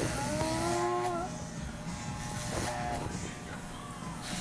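A man's drawn-out groan, about a second long, with shorter vocal sounds later, over the steady buzz of electric hair clippers with a guard cutting through hair.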